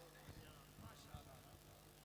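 Near silence: a faint steady hum with faint, indistinct voices in the background.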